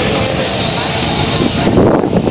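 Motorcycle engines running close by, with people talking over them; the engine noise swells slightly near the end.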